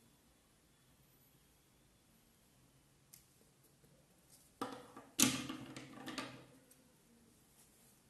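Hands handling small tools on a table: mostly quiet, then two short knocks and a rustle about four and a half and five seconds in, the second the louder, as the lighter is put away and the scissors taken up.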